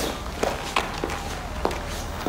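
Footsteps on a hard floor: about six steps at an uneven pace.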